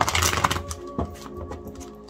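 Soft background music with long held tones, over which a tarot deck is shuffled by hand: a dense papery rustle of cards in the first half second and a sharp tap at about one second.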